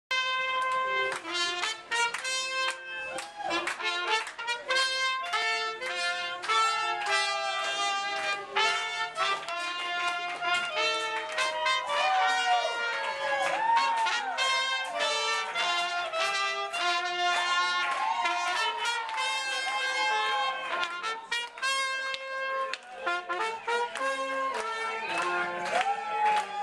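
Small live band of trumpet, clarinet and trombone playing a tune together, with notes bending and sliding in the second half.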